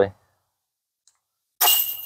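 Putter disc hitting the hanging metal chains of a disc golf basket: a sudden jingling clatter of chains with a thin metallic ring, about one and a half seconds in. It is the sound of a made putt.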